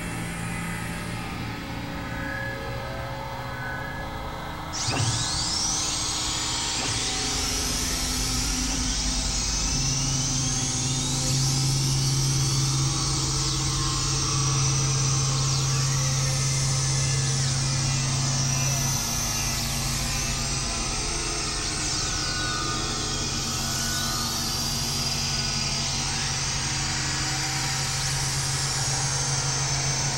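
Experimental electronic synthesizer drone and noise music: sustained low droning tones, with a harsh hissing noise layer that cuts in suddenly about five seconds in and carries repeated high sweeping pitch glides.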